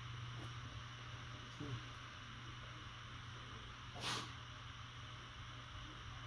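Quiet room tone with a steady low hum. About four seconds in comes one short, breathy sound like a sniff or exhale from a person eating.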